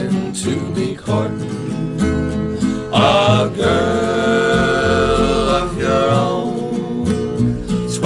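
Male folk quartet singing in close harmony over strummed acoustic guitars, with long held sung notes.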